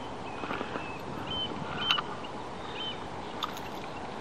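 Quiet steady background with a few faint clicks from hands working a square-bill crankbait's hooks free of a bass in a rubber landing net, and three or four short high chirps.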